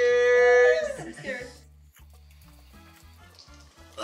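A person's loud, held "woo" cheer lasting about a second and falling off at the end. After it comes faint background music with a steady bass line.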